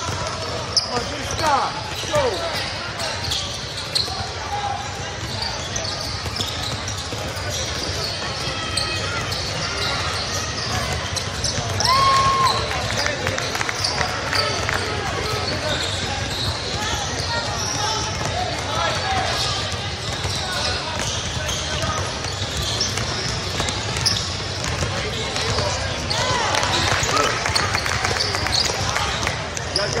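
Basketball being dribbled on a sport-tile court during a game in a large hall, with indistinct voices of players and spectators around it and short squeaks scattered through, and a brief steady tone about twelve seconds in.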